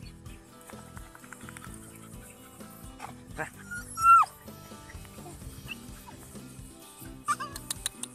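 Background music with steady tones, over which a dog gives a short whine that falls in pitch, about four seconds in, with a fainter dog sound just before it.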